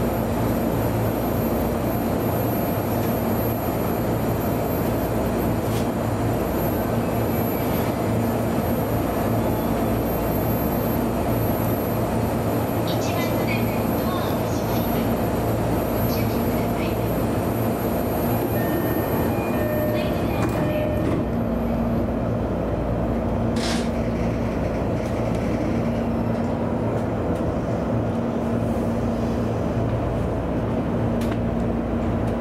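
Steady hum of a JR East E233 series electric train standing at a station, heard inside the driver's cab. A few short, faint tones sound about two-thirds of the way through.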